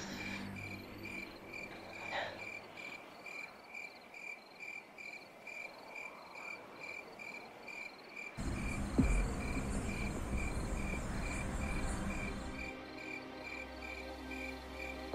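Crickets chirping steadily, about two chirps a second, in a high pulsing trill. About eight seconds in, a low, rumbling background-music drone comes in and becomes the loudest sound.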